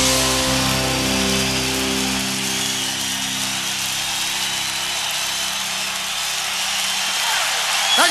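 A live rock band's final held chord rings and cuts off about two seconds in. The concert crowd then cheers and applauds.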